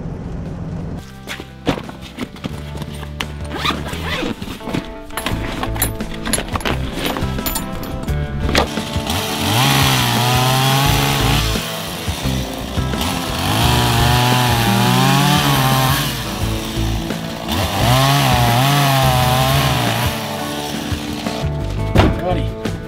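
Petrol chainsaw cutting into a fallen log in three long bursts from about nine seconds in, its engine pitch wavering under load, over background music.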